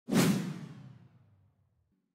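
A whoosh sound effect for an animated title card. It starts suddenly and fades away over about a second and a half.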